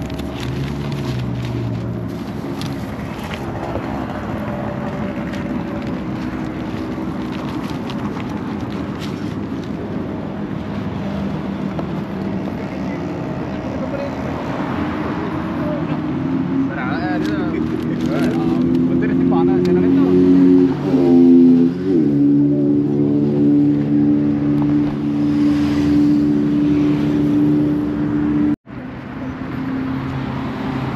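Road traffic passing on a highway, with a steady engine drone that grows stronger in the second half, under people talking. The sound cuts out abruptly for a moment near the end.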